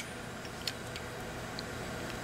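Low steady background hum with a couple of faint light clicks, the first about a third of the way in, as the orbiting scroll parts of an opened Copeland scroll compressor are moved by hand.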